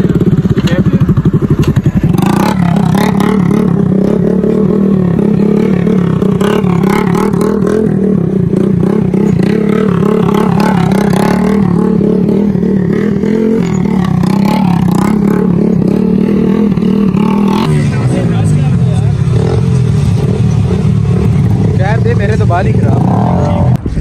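Small motorcycle engine held at high revs with a steady drone while the bike is ridden in tight circles; its note drops and changes about two-thirds of the way through. Men's voices shout over it.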